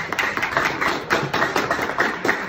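Audience applauding: many overlapping hand claps at a steady level.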